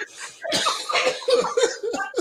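Men laughing hard: a quieter breathy start, then louder bursts of laughter from about half a second in.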